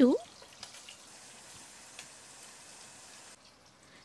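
Hilsa fish pieces shallow frying in oil in a pot: a faint, steady sizzle that stops abruptly near the end, with one light click about halfway.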